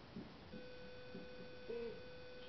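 A faint, steady mid-pitched tone that starts about half a second in and holds without change, with faint murmured voice sounds beneath it.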